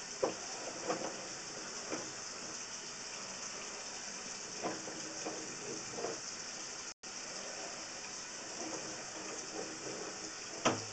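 Sewer inspection camera's push cable being drawn back through the line and onto its reel. It gives a steady hiss with a few faint, irregular knocks. The sound cuts out briefly about seven seconds in.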